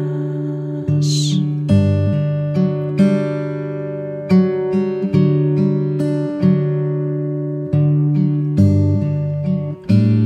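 Acoustic guitar playing an instrumental passage of a slow song, plucked chords struck every second or so, each left to ring out.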